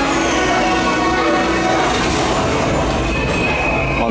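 Theme-park ride soundtrack playing loudly over the restaurant's loudspeakers during its light show: a dense, steady wash of many sustained tones.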